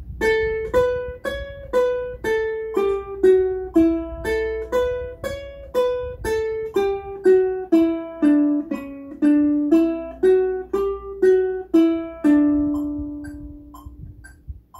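Ukulele playing a single-note scale exercise in steady eighth notes at 60 bpm, about two plucked notes a second, running from an A Mixolydian line into D major and settling down to a low final note that is held and rings out near the end. A metronome ticks faintly on every eighth note underneath.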